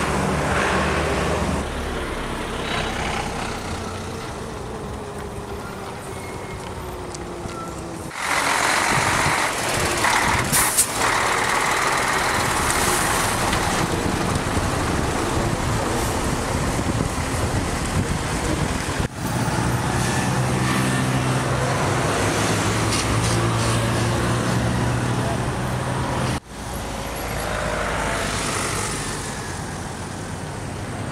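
Road traffic in a slow jam: the engines of queued trucks, minibuses and cars idle and crawl forward. There is a short high hiss about ten seconds in, and the sound changes abruptly several times.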